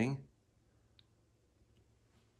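A man's voice trailing off, then near silence (room tone) with a single faint click about a second in.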